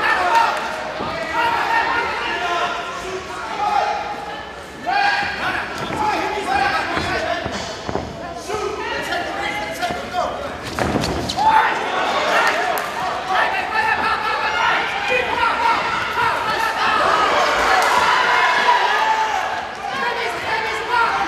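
Shouting voices from the crowd and ringside in a large hall, with repeated thuds and slaps from the boxing ring as the fighters exchange punches and move on the canvas.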